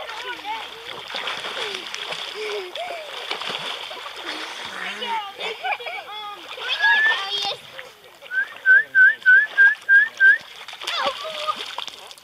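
Water splashing with voices calling, some of them children's. About eight seconds in, a quick run of seven short, loud, rising chirps, about three a second, the loudest sound in the stretch.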